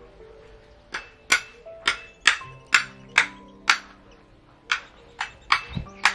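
A cleaver chopping into the top of a husked young coconut to open it: a series of sharp strikes, about two a second, with a short pause about four seconds in.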